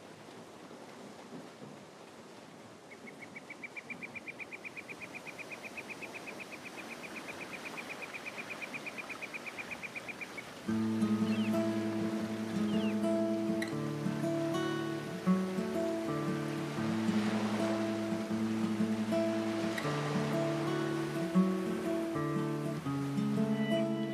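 Soundtrack of an animated film: a soft, even hiss of sea waves with a fast, evenly pulsed high trill over it for several seconds. Plucked acoustic guitar music then comes in suddenly and louder, about ten seconds in.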